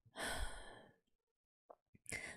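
A woman's audible sigh: one breathy exhale lasting under a second, followed by a faint mouth click shortly before she speaks again.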